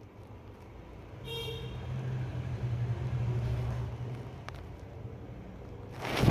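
A passing road vehicle: a short horn toot about a second in, then a low steady engine hum that swells and fades over a few seconds.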